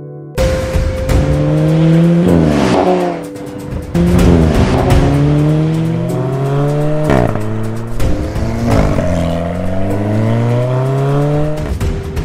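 Alfa Romeo 4C's turbocharged 1.75-litre four-cylinder engine accelerating hard. Its pitch climbs and drops sharply several times as it shifts up through the gears.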